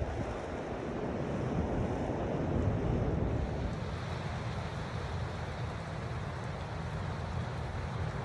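Waves from a rough sea breaking and washing on the shore in a steady rushing noise, with wind rumbling on the microphone.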